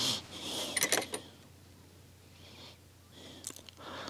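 Breathing close to the microphone during the first second or so, with a few faint clicks about a second in and again near the end.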